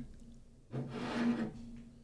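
A man's short, faint breath out at a close microphone, lasting under a second, about halfway through.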